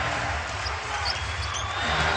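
Basketball dribbled on a hardwood court amid steady arena crowd noise, with a few short high sneaker squeaks about a second in.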